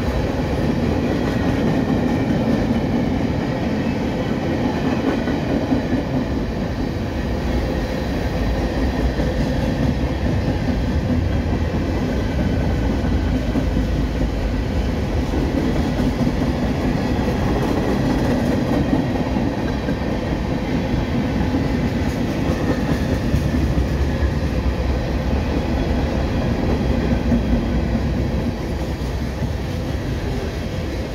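Cars of a CSX mixed manifest freight train rolling past close by: steady, loud wheel-on-rail noise and rumble from the passing hoppers, tank cars and boxcars.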